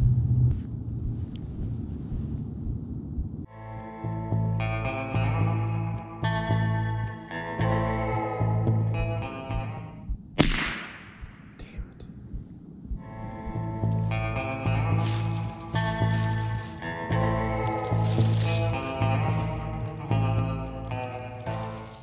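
Background music with steady chords, cut through about ten seconds in by a single sharp crack of a Marlin Model 60 .22 LR rifle shot, followed by a short trailing echo.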